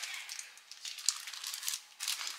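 Thin plastic film crinkling in soft, irregular rustles as hands fold a lavash sheet over on it and press it flat.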